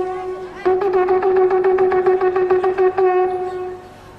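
A long twisted shofar being blown. A held note ends right at the start. A new blast begins about half a second in, warbling rapidly for a couple of seconds, then settles into a steady note that fades out shortly before the end.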